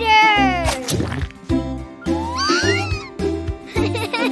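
Bouncy children's cartoon music with a steady bass beat. Over it, a long gliding cartoon sound falls in pitch through the first second, and a shorter one rises about two seconds in.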